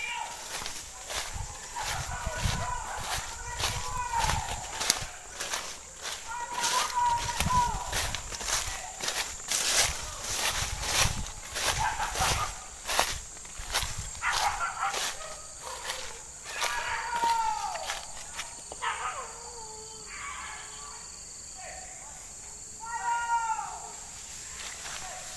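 Footsteps crunching and brushing through dense undergrowth, with faint calls that fall in pitch every couple of seconds. The calls thin out in the last few seconds.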